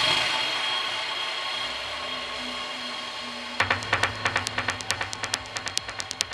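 Electronic progressive psytrance: a wash of noise that slowly fades over the first few seconds, then sharp, quick clicking percussion over a steady low bass tone from a little past halfway.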